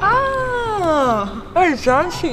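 A long, high, pitched cry that slides steadily down in pitch for about a second, followed near the end by a shorter call that rises and falls.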